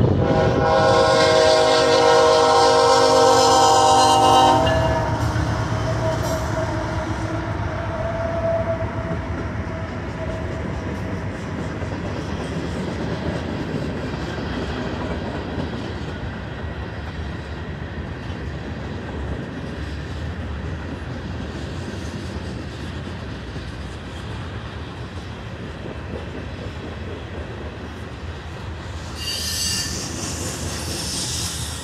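Freight locomotive's air horn blowing one long chord for the grade crossing, cutting off about four and a half seconds in. Then the freight cars roll past with a steady rumble and the clatter of wheels on the rails, slowly getting quieter.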